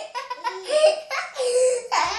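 A baby laughing in several short, high-pitched bursts.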